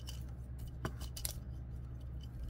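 Small plastic clicks from the jointed parts of a Transformers Studio Series 86 Bumblebee figure as its leg panels are flipped during transformation: a few sharp clicks, the clearest a little under a second in and two more close together shortly after.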